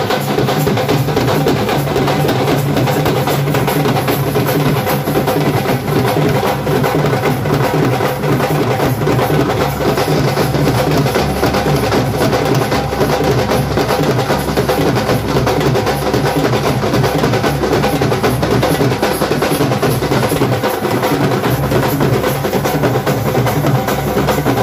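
Loud, continuous drumming and percussion with a steady, even beat.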